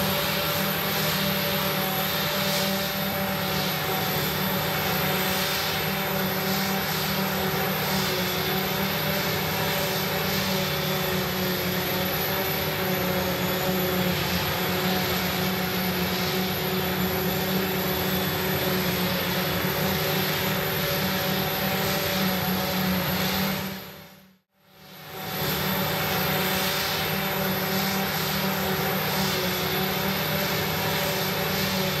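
Claas Jaguar 960 self-propelled forage harvester running at working load as it chops hay, a steady engine-and-machinery sound with several held whining tones over a hiss. The sound dips away sharply for under a second about 24 seconds in, then comes straight back.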